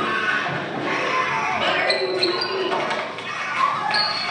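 Soundtrack of a slapstick office skit played through room speakers in a large hall: thumps and scuffling on a hard floor as a person is dragged, with raised voices and a few short high squeaks.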